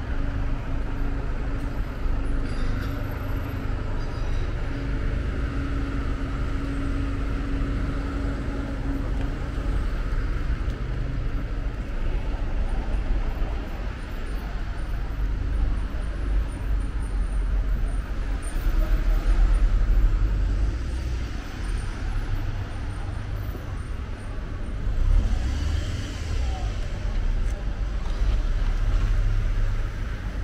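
Street traffic ambience: a steady low rumble of road traffic, swelling twice in the second half as vehicles pass close by, with a steady hum over the first ten seconds or so.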